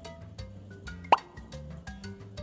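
A short cartoon-style "bloop" sound effect, a quick upward sweep in pitch, about a second in, marking the wooden puzzle piece set into place, over soft background music.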